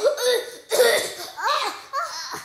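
A girl coughing and laughing in several loud bursts, close to the microphone.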